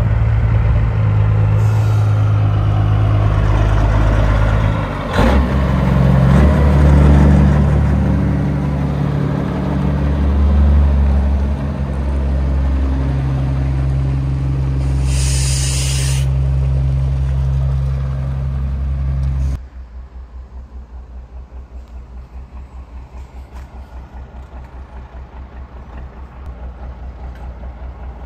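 A big-rig semi's high-horsepower diesel engine running under load as it pulls a heavy trailer at low speed, changing pitch about five seconds in, with a short air-brake hiss about fifteen seconds in. Just before twenty seconds the sound drops suddenly to a quieter, evenly pulsing diesel idle.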